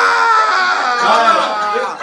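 A high-pitched human voice crying out in one long wail that slowly falls in pitch, then shorter, lower cries near the end.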